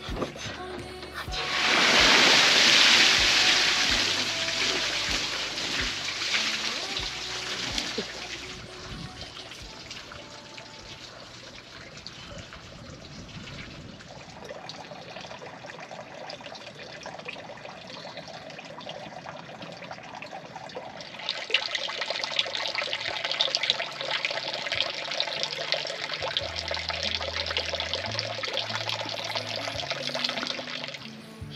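Water sloshing and pouring, loudest from about two to four seconds in, as someone gets into a wooden cold-water plunge tub after the sauna, over background music. A steady trickle of running water comes back for the last third.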